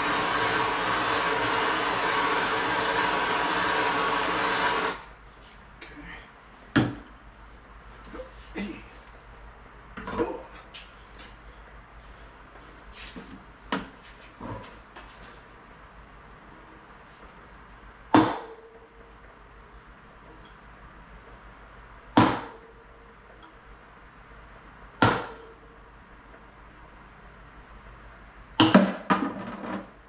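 A pressurised can hisses loudly and steadily into the wheel hub for about five seconds, then cuts off sharply. After that a hammer strikes the hub every few seconds, several blows ringing metallically, driving the worn wheel bearing out of a vintage motocross bike's front hub.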